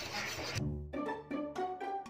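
Background music: short pitched notes in a steady rhythm, coming in suddenly about half a second in.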